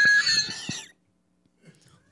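A man laughing hard, a high squealing laugh that trails off about a second in, followed by silence.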